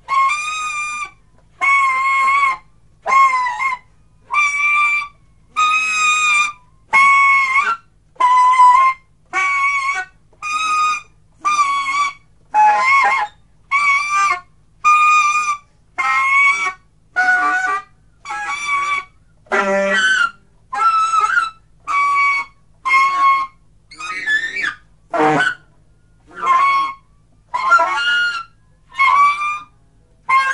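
Solo saxophone free improvisation: short, loud blown phrases about one a second with brief silences between, mostly high notes that bend and waver in pitch.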